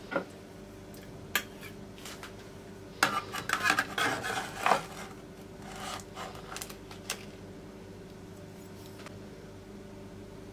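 A stainless steel cake server scraping and clinking against a metal baking tray and a ceramic plate as baklava pieces are lifted out and set down. The sound comes as a few sharp clicks, then a busy run of scrapes and knocks around three to five seconds in, and a few lighter taps after it, over a faint steady hum.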